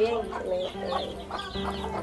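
Chickens clucking in a run of short calls.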